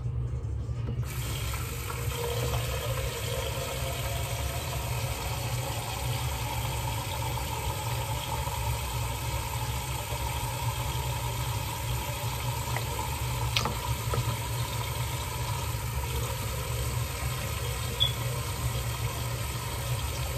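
Steady hiss of running water, likely a bathroom tap left on, with a steady low hum beneath it and a faint tick or two.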